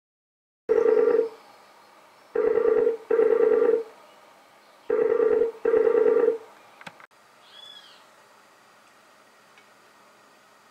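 A toucan calling: five short, harsh calls of even pitch, the first alone and the rest in two pairs, followed by a click and a faint high chirp.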